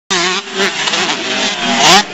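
Several 125-class motocross bikes running on a dirt track, their buzzing engines wavering up and down in pitch, with one revving up steeply and loudest near the end.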